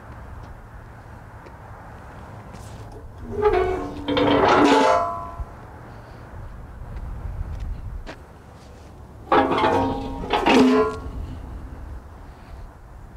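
Metal loading ramps of a lowboy trailer being dropped down by hand, twice: each time a clanging metal impact with a ringing, scraping tail, about three and a half and nine and a half seconds in. A steady low rumble underneath.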